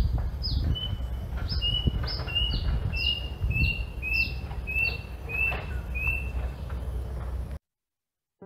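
Bird calling in a steady series: a high whistled note sliding downward, repeated about twice a second, with a shorter, lower note between each. It cuts off abruptly near the end.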